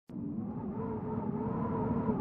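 Wind howling, a steady rush with a wavering pitch.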